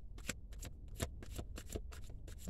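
Tarot deck being shuffled by hand: a quick, uneven run of papery card clicks.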